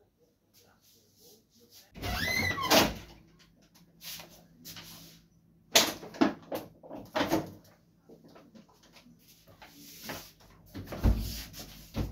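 A loud drawn-out noise about two seconds in, then a refrigerator door being opened, with sharp knocks and clatter of bottles and shelves. The door shuts with a heavy thud near the end.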